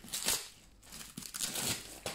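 Paper wrapping rustling and crinkling in two short bursts as hands handle and unwrap a rolled parcel.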